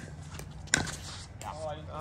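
A single sharp, hollow pop of a plastic pickleball, struck or bounced, about three quarters of a second in, with a fainter tap at the start. Voices talk faintly near the end.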